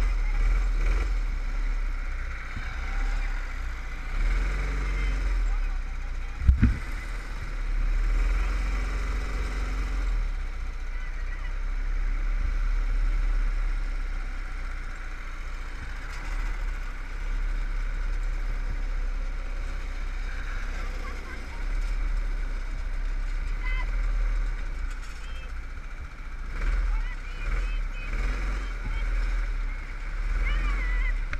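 Go-kart engine running at racing speed, its pitch rising and falling through the corners, heard from a camera mounted on the kart with heavy wind rumble on the microphone. A single sharp knock about six and a half seconds in.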